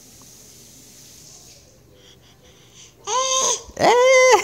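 Infant babbling: after a quiet stretch, two loud, high-pitched vocal calls about three seconds in, the second rising and then held.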